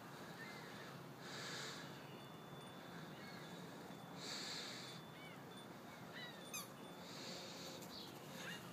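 Quiet outdoor ambience with soft breaths close to the microphone, one about every three seconds, and a few faint bird chirps, including a quick falling run of notes near the end.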